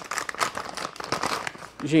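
Plastic packaging bag crinkling in dense, irregular crackles as it is pulled open and off a small part by hand.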